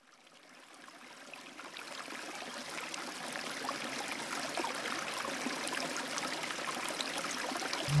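Trickling, running water like a stream, fading in from silence and slowly growing louder, with fine crackles through it. A loud low musical note comes in at the very end.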